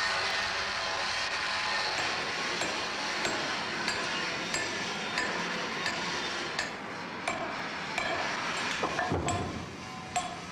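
Hammer striking iron castings at an even pace of about three blows every two seconds, each with a short metallic ring, over the steady roar of foundry machinery that eases near the end.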